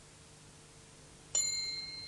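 A single bright, bell-like chime strikes about one and a half seconds in. It rings on in a few high tones and slowly fades.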